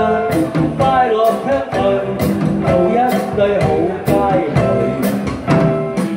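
A man and a woman singing a duet over a live band of electric guitar and drums, with a crisp drum hit about once a second. The man's voice leads at first, and the woman is singing by the end.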